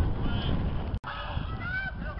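Distant high-pitched shouts from players across a football pitch over a low wind rumble on the camera microphone. The sound drops out for an instant about a second in, and the shouts are clearer after it.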